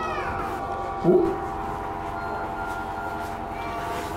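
Several steady tones held together like a sustained chord, with pitches sliding down at the start and a short voice-like sound about a second in.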